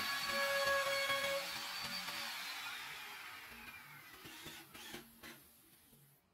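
A machine's whir with a steady hum, winding down: one tone falls in pitch as the sound fades away over several seconds.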